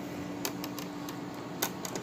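LEGO plates being handled and pressed onto the studs of a baseplate, giving light plastic clicks: a quick cluster about half a second in and two more near the end.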